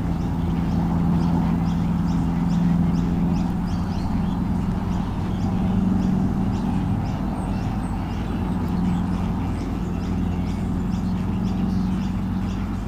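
A steady low hum with a run of short, high chirps repeating about twice a second over it.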